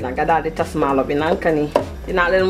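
A woman's voice talking, with a couple of sharp knocks and scrapes from a plastic slotted spoon stirring rice into broth in a steel stockpot.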